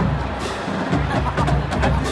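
College marching band drumline playing, drum beats with sharp clicks struck at an uneven rhythm.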